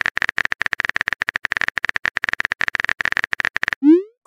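Typing sound effect for a chat-story message: a rapid, even run of keyboard-like clicks, more than ten a second. Near the end it stops and a short tone glides upward.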